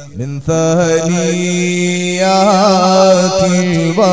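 A man chanting a supplication in long, held melodic notes, with wavering ornaments partway through. It starts about half a second in, after a brief pause in speech.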